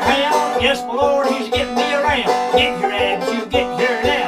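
Five-string banjo played clawhammer style, a bouncy old-time mountain tune with a steady low thump on the beat.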